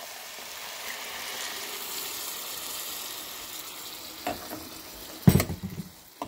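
Blended tomato sizzling steadily as it hits the hot fried fideo noodles and diced vegetables in the pan. Near the end a metal slotted spoon knocks against the pan as the mixture is stirred, with one sharp loud clack about five seconds in.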